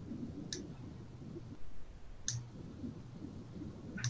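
Two faint, sharp clicks about two seconds apart, from someone working a computer, over a low steady hum.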